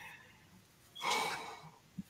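A person breathing out hard once, a sigh-like exhale about a second in, with a brief tap near the end.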